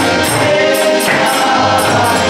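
Harmonium playing sustained chords of a devotional kirtan melody, with singing over it and a steady beat of jingling metallic percussion about twice a second.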